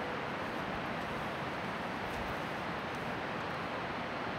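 Steady outdoor background noise: an even rushing hiss with no distinct events.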